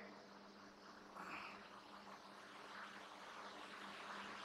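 Near silence: room tone with a faint steady hum and a faint, brief soft rustle about a second in.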